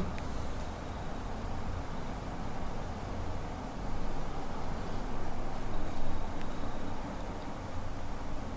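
Steady low background rumble with no distinct sounds, apart from a faint tick near the start and another a little after six seconds in.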